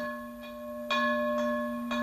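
A deep bell tolling: a struck note rings on with a low steady hum, and the bell is struck again about a second in.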